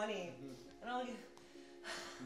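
People's voices: two short wordless exclamations, then a breathy gasp near the end.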